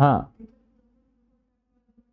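A man's voice says a short 'haan', then a faint, steady low buzz with a slight waver runs on under near-silence.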